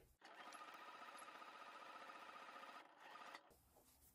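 Computerised domestic sewing machine stitching a seam in fabric, running faintly with a rapid, even stitch rhythm for about two and a half seconds, then a brief second run before it stops.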